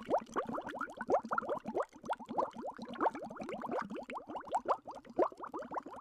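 Bubbling sound effect: a dense stream of quick plops, each a short rising blip, many a second.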